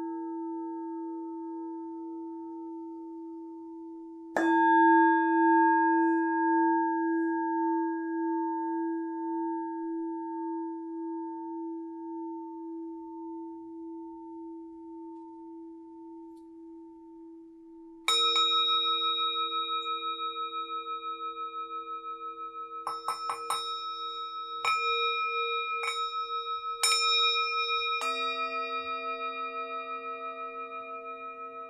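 Tibetan singing bowls struck and left to ring. A low bowl's wavering hum is struck again about four seconds in and fades slowly. Just past halfway a higher-pitched bowl is struck, followed by a quick flurry of light taps and several more strikes, and a deeper bowl joins near the end.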